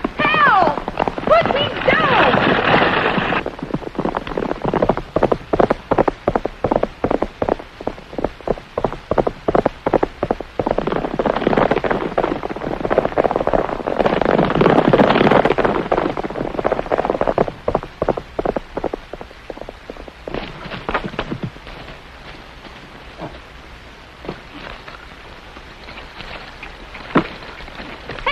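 Horses galloping on a dirt trail: a rapid, steady run of hoofbeats that thins to scattered steps in the last several seconds. In the first few seconds a woman's voice cries out over the hooves.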